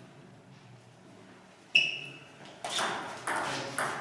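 A short table tennis rally: a sharp, ringing ping of the ball about two seconds in, then three louder hits in quick succession near the end, each echoing in the hall.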